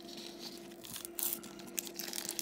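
Plastic wrapper of a meat stick crinkling and tearing as it is pulled open, in quick irregular crackles that grow busier about a second in.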